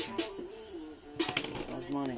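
A man humming or singing quietly under his breath, with a few light clicks and knocks a little over a second in.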